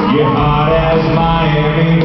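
Live country band playing, with a male voice singing long held notes over it, recorded from far back in a large hall.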